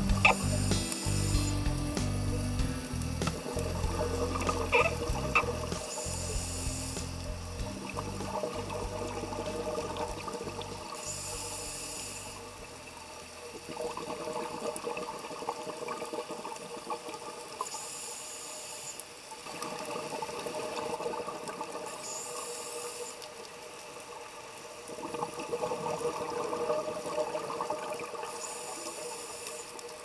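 Scuba regulator breathing underwater: a short inhalation hiss about every five seconds, each followed by several seconds of exhaled bubbles. Background music with a bass line plays over the first twelve seconds or so, then drops out.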